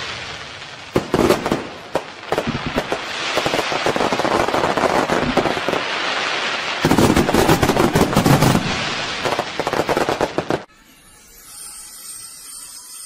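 Fireworks going off: a dense run of sharp bangs and crackling reports over a continuous fizzing rush, which cuts off suddenly near the end.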